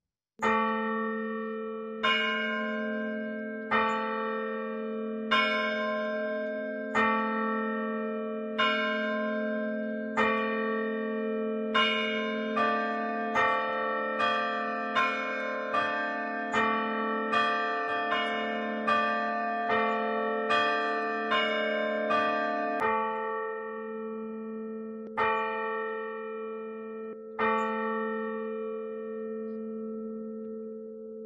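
A single bell struck over and over at the same pitch, each strike ringing on into the next. The strokes come about every one and a half seconds, quicken to nearly one a second in the middle, then slow to a few spaced strokes near the end.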